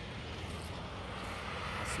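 Steady outdoor background noise: a low, uneven rumble with a light hiss and no distinct events.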